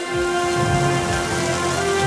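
Seafood sizzling on a hot flat-top griddle, a dense hiss that sets in abruptly, over background music.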